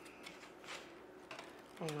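Soft rustling and light ticking of a damp reed weaver being pulled in and out between the reed spokes of a basket, with one clearer rustle a little under a second in.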